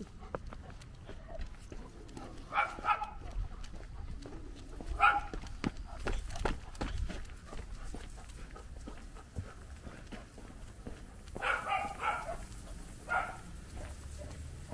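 A dog barking in short bursts: a couple of barks about three and five seconds in, then a quick run of barks near the end, with footsteps on pavement in between.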